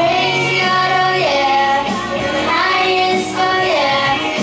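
Young girls singing a song together into microphones, holding and sliding between sung notes over a steady musical accompaniment.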